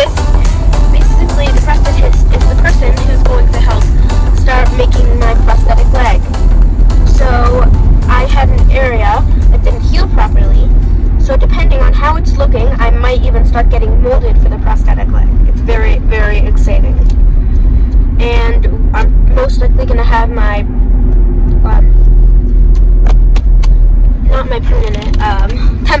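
A girl singing with no clear words, holding and bending notes, over the steady low rumble of a moving car heard from inside the cabin.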